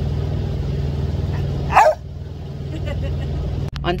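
A single loud dog bark a little under two seconds in, over the steady low hum of an idling semi-truck diesel engine; the engine hum cuts off right after the bark.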